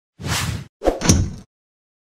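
Two quick whoosh sound effects, back to back, each about half a second long, the second louder and deeper than the first.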